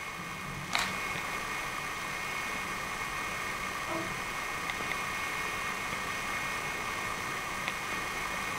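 Steady electronic whine and hiss of a handheld camera's own recording noise, with one sharp click a little under a second in and a few faint ticks later.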